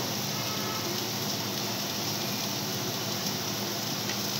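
Steady kitchen background noise while cooking: an even hiss with a faint low hum underneath, unchanging throughout.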